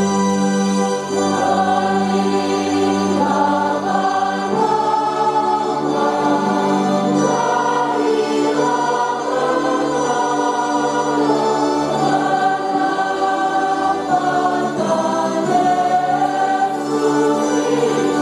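Church choir singing a hymn, held sustained notes underneath from an electronic organ, continuing without a break.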